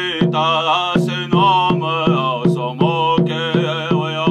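A man singing a Hopi song, accompanying himself on a cylindrical drum struck with a stick in a steady beat of about three strokes a second.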